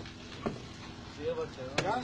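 A man's voice making short breathy exclamations in the second half, with a few sharp clicks before and between them.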